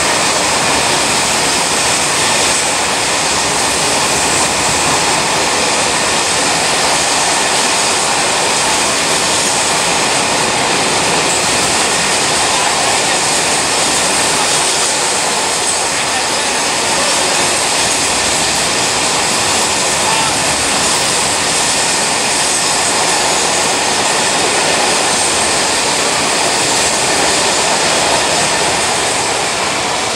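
Freight train of open-top wagons running through a station at speed: a loud, continuous rush and rattle of wheels on rail, easing slightly near the end.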